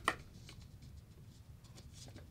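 A single sharp click of equipment being handled just at the start, then quiet room tone with a faint low hum and a few small ticks.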